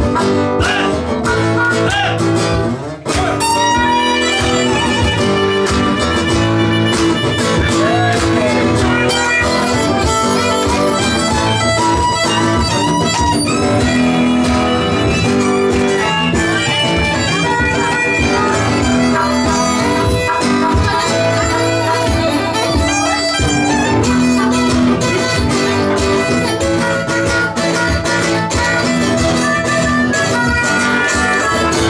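Live acoustic band music: a harmonica and a violin playing together over acoustic guitar, with a brief break about three seconds in.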